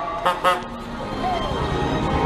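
A horn tooting in short blasts, two of them about a quarter second apart near the start, over steady crowd and street noise.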